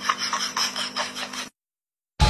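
Rapid rhythmic rasping strokes, about four a second, over a faint steady hum; the sound cuts off suddenly about one and a half seconds in.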